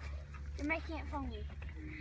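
Faint background children's voices in short snatches over a steady low hum.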